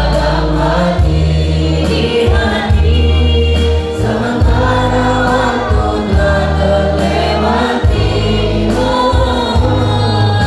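A small mixed group of teenage singers singing together into microphones over amplified backing music, with a bass line that moves to a new note every second or two.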